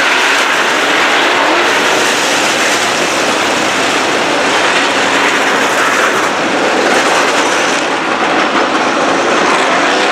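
Dirt-track modified race cars' V8 engines running hard at racing speed as the field goes down the straight. The sound is loud and steady throughout.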